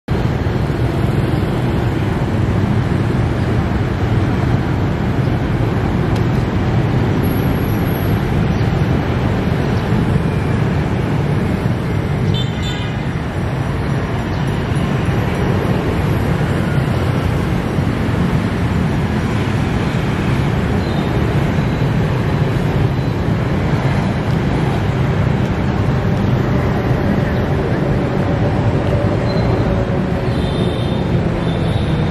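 Steady roadway traffic noise, an even rumble of passing vehicles, with a brief tone about twelve seconds in.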